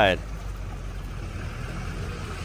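Kia SUV wading through deep floodwater, its engine running low and steady under a hiss of moving water.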